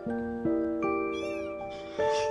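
A kitten's single short, high-pitched meow about a second in, over background music of struck bell-like mallet notes.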